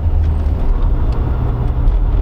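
An engine running with a steady low rumble and a few faint clicks over it.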